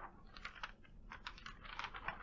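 Faint, quick, irregular light clicks and rustles, several a second: papers or drawings being sorted through by hand while searching for one.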